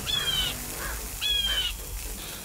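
A bird calling twice, harsh calls about half a second long and a little over a second apart, over a faint steady hiss.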